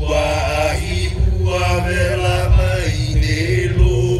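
Hawaiian chant accompanying a hula performance: long, sustained chanted vocal lines that shift in pitch, over a heavy low rumble.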